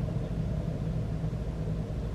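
A car running, heard from inside the cabin: a steady low rumble of engine and road noise.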